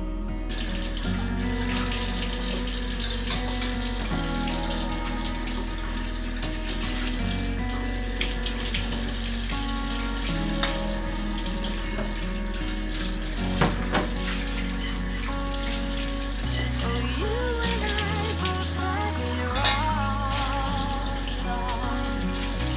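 Water running steadily from a kitchen tap into a sink, under soft background music, with a couple of light knocks about two-thirds of the way through and near the end.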